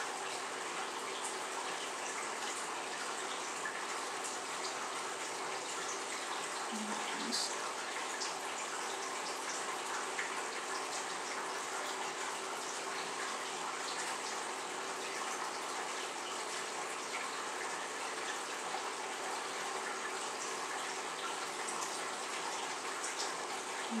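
Steady, even rushing background noise, with a brief low vocal sound about seven seconds in.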